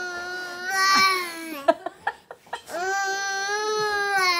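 A one-year-old girl's voice, with her mouth pressed against a foil balloon: two long, steady-pitched calls, the second starting a little under three seconds in, with a few short clicks in the gap between them.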